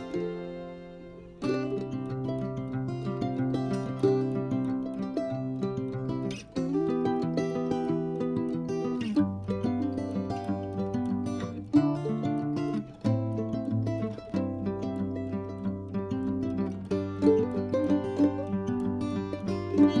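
Instrumental background music: plucked notes over held low notes, fading briefly at the start and coming back in about a second and a half in.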